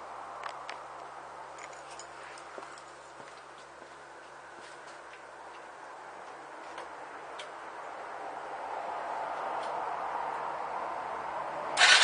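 Quiet room with a few scattered light clicks and a soft hiss that grows a little louder over the last few seconds. Right at the end the Yamaha Virago 125's V-twin engine starts with a sudden loud burst.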